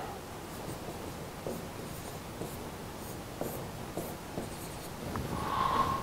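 Marker writing on a whiteboard: faint, irregular scratching strokes and light taps as a formula is written out.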